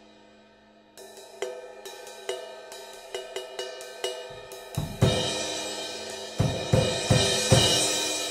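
Zildjian 18" A Medium Thin crash cymbal played on a drum kit. A run of lighter stick strokes starts about a second in. Bass drum and loud crash hits follow from about five seconds in, and the crash rings out in a bright, spreading wash.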